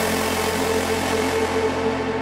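Electronic dance music in a drumless breakdown: a sustained synth chord over a steady low bass drone, with the bright top end slowly fading.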